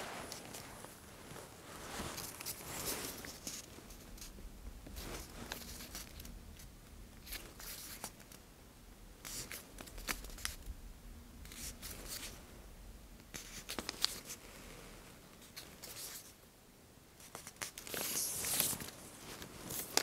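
Close-miked soft rustling and brushing as a cloth tape measure is handled and laid along a bare back by fingertips, in irregular strokes with an occasional small tick. The loudest rustle comes near the end.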